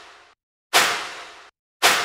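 Clap sample drenched in reverb, played back repeatedly as the tail layer for a snare. Two sharp noisy hits about a second apart, each dying away in a bright reverb tail over about two-thirds of a second, after the fading tail of an earlier hit.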